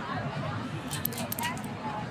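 Spring-loaded chiropractic adjusting instrument (an activator) firing against the low back at L5 and the sacrum: a quick cluster of sharp clicks about a second in.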